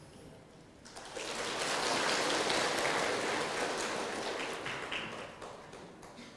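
Audience applauding, swelling about a second in and dying away near the end.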